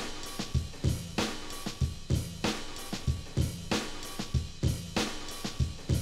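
A recorded drum beat with kick, snare, hi-hat and cymbal, played at a steady tempo with strong hits a little under once a second and lighter hits between. It is the source audio being played into the sampler's input and heard through its outputs, ready to be sampled.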